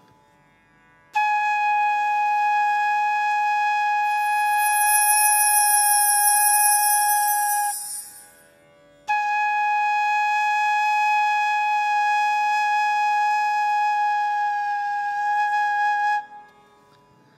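Bamboo Carnatic flute sounding one long held note twice at the same steady pitch, with a short break for breath between. Breathy air noise rises over the middle of the first note.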